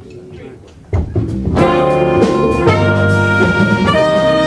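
Jazz band starting a tune about a second in: a hit from drums and bass, then horns and harmonica playing long held notes over the rhythm section.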